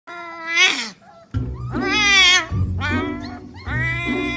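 Husky puppy howling in four high, wavering yowls, each rising and then falling in pitch. Background music with a bass beat comes in a little over a second in.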